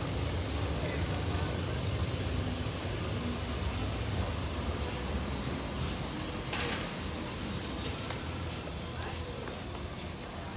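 Vintage Lisbon tram running on curved street track: a low rumble from its motors and wheels that slowly fades. A short hiss comes about six and a half seconds in.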